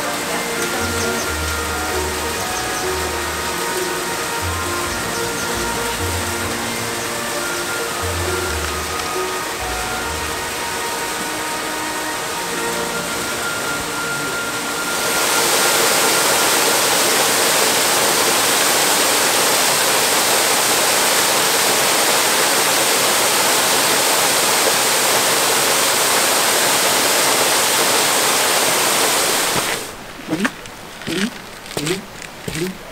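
A waterfall spilling down inside a masonry dam, a steady rush of falling water. Background music plays over it until about halfway, then stops and the water goes on alone, louder.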